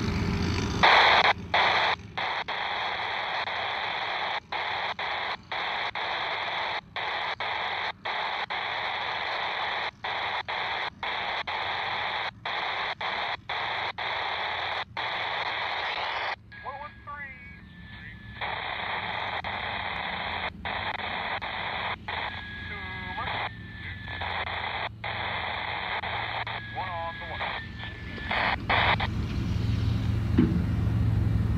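Radio scanner hissing with static that cuts out for an instant again and again. About halfway through the hiss turns duller, and short steady tones and garbled warbling snatches of a transmission come through a few times.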